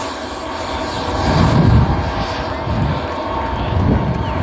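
Electronic dance music over a large festival sound system, heard from within the crowd: a stretch of sustained, droning synth tones over deep bass swells that rise to a peak about halfway through.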